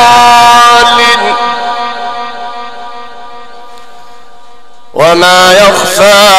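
A man reciting the Quran through a microphone and sound system, holding a long melodic note that stops about a second in and fades slowly in a long echo. About five seconds in, the recitation starts again loudly with a new phrase.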